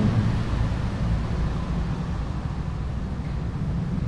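Steady low rumble and hum of background room noise.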